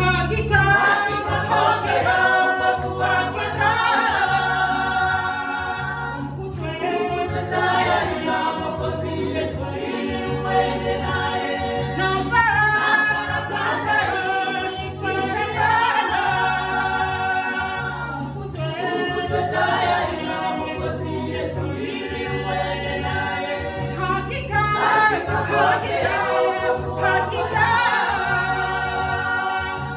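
A women's church choir singing a Swahili gospel song together in harmony, over a steady repeating low beat.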